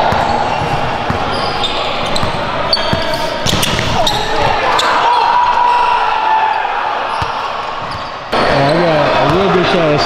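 Basketballs bouncing on a hardwood gym floor, with scattered knocks amid background voices. About eight seconds in the sound jumps abruptly to a louder, clear voice talking.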